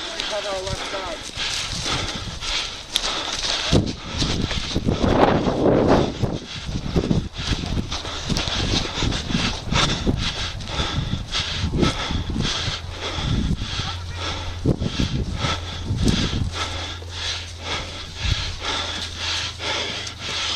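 Rustling and irregular footfalls as someone moves through dry reed grass and across a field. A steady low hum joins from about halfway through.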